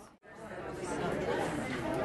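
Indistinct chatter of several people talking at once in a large room, cut off by a brief drop to silence shortly after the start and then resuming.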